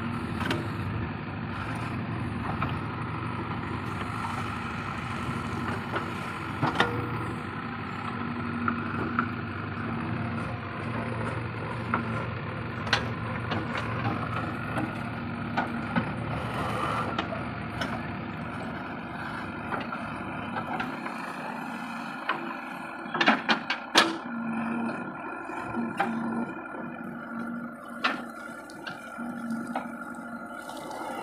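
JCB 3DX backhoe loader's diesel engine running under load as the backhoe digs and dumps soil, with scattered knocks and clanks from the bucket and arm. The low rumble eases about two-thirds of the way through, followed by a cluster of sharp clanks.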